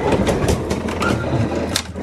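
Refrigerator freezer drawer pulled open on its slides: a steady rolling rattle with a low hum and several sharp clicks.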